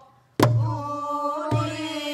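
Pansori singing on a long held note, accompanied by a buk barrel drum struck twice with a stick, about a second apart, each stroke giving a sharp crack and a low boom.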